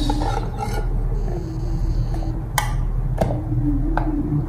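A knife scraping and clicking against the nonstick plates of a sandwich maker while cake pieces are lifted off, with a few sharp clicks over a steady low hum.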